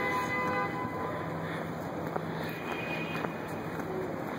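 Heavy street traffic: a steady rumble and hiss of passing vehicles, with a whine of several steady tones that fades over the first second and a short higher tone in the middle.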